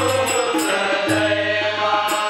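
Men's group singing a Marathi devotional bhajan in chorus, accompanied by harmonium, tabla and small jhanj hand cymbals keeping a steady beat.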